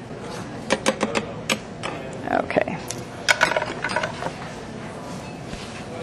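Scattered sharp clicks and clinks of kitchen utensils and containers being handled while olive oil is measured out by the tablespoon, a cluster of them near the start and another a little past halfway.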